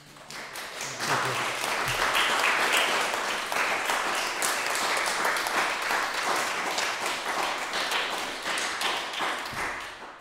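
Audience applauding, swelling over the first second and tailing off just before the end.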